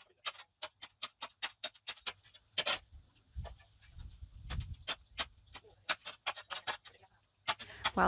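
A metal digging tool striking and working into stony soil: a quick, irregular run of sharp clicks and knocks against rock, several a second.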